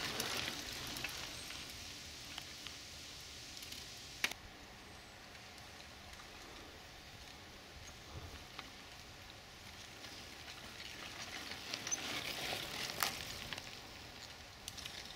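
Mountain bikes rolling on a dirt forest trail: a crackly rush of tyre and drivetrain noise. It is loudest as a rider passes close at the start and swells again as a group of riders approaches near the end, with a few sharp clicks.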